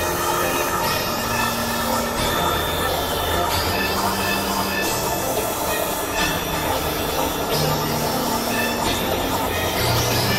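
Experimental synthesizer noise music (Novation Supernova II and Korg microKORG XL): a dense, harsh wash of noise with held, squealing tones that shift pitch in steps about every second.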